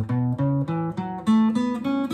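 Acoustic guitar playing a quick run of single picked notes, about eight in two seconds, each ringing briefly into the next.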